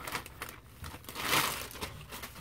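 Plastic poly mailer bag crinkling and rustling as it is handled and opened, loudest about a second and a half in.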